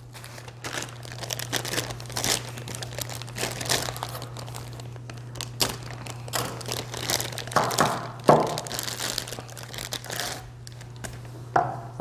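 Plastic packaging crinkling and rustling in irregular crackles as it is handled and pulled open to free an angle grinder's side handle, loudest about eight seconds in.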